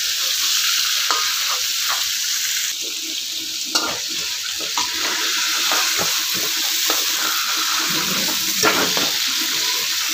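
Eggplant strips sizzling in hot oil in a kadai while a spatula stirs and turns them. Scattered taps and scrapes of the spatula on the pan sound over the steady hiss.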